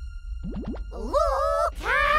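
Cartoon sound effects: a few quick rising whistles about half a second in, then two longer sliding tones whose pitch wavers up and down.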